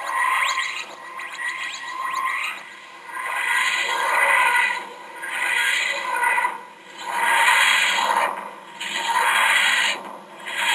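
The TARDIS dematerialisation sound effect: a grinding, wheezing swell that rises and fades again about every two seconds, five or six times over.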